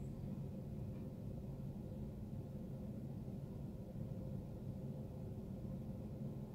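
Faint, steady low hum of a motorized display turntable turning slowly.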